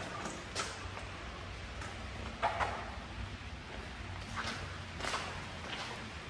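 A few soft, scattered footsteps on a concrete floor over a faint, steady low hum of room noise.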